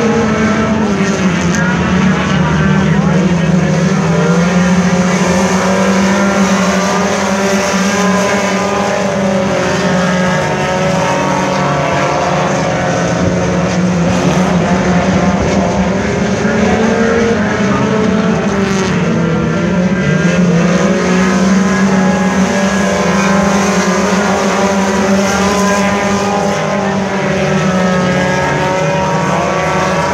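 A field of Hornet-class compact race cars running laps on a dirt oval, several engines heard at once. Their pitches rise and fall as the cars accelerate, lift and pass.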